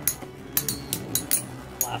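Metal Fight Beyblade tops spinning in a plastic stadium, clinking against each other in a series of sharp metallic clicks.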